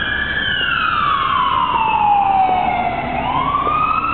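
A siren wailing, its pitch falling slowly for about three seconds and then starting to rise again near the end.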